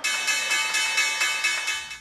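The New York Stock Exchange opening bell, an electric bell, ringing continuously with a bright, high, metallic ring. It starts suddenly and fades near the end.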